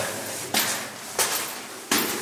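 Footsteps descending steep stone steps: four evenly spaced footfalls, a little over half a second apart.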